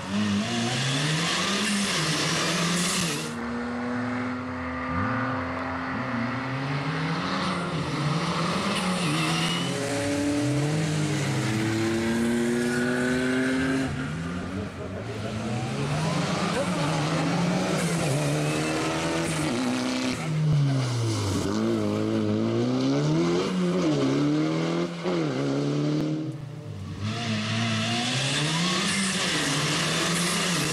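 Rally car engine revving hard and changing gear repeatedly: the pitch climbs, drops at each shift and climbs again every second or two, with spells of hiss from the tyres on the wet road.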